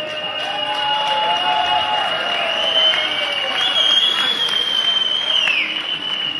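A crowd in a hall clapping and cheering, with a thin, steady high-pitched whistle-like tone held over the noise that bends downward near the end.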